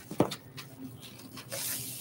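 Plastic wrapping rustling as a honeycomb laser bed panel in its bag is handled and lifted from the box, with one sharp knock about a quarter second in and a hissing rustle of the bag over the last half second.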